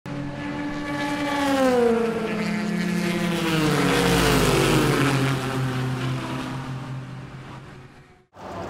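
Race car engines at speed, their note falling in pitch twice as cars go by, then fading away near the end.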